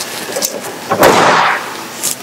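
Trunk lid of a 1976 Triumph TR6 slammed shut about a second in: a single slam with a short ringing tail.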